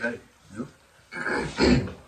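Short vocal sounds from people sitting close to the microphone, with a throat clearing about a second in.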